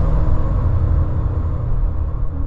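Deep cinematic rumble from film-trailer sound design, held low and steady and slowly fading.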